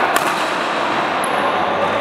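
Badminton racket striking the shuttlecock in a jump smash: one sharp crack just after the start, over a steady hiss.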